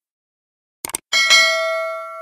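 Mouse-click sound effect, a quick double click, followed about a second in by a bright notification-bell ding that rings with several clear tones and fades away.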